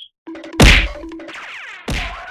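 A loud whack about half a second in, followed by a falling pitch glide over background music, and a second sharp hit near the end.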